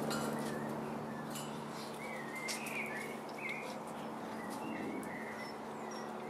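Birds chirping faintly in short warbling calls over a low steady hum, with light scattered rustling.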